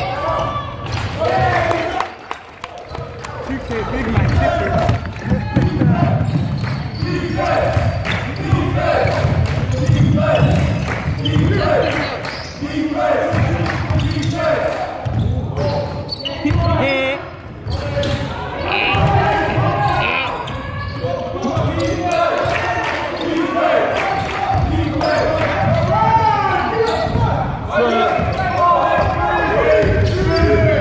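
A basketball being dribbled on a sports-hall floor amid play, with players and onlookers calling out throughout, their voices and the ball impacts echoing in the hall.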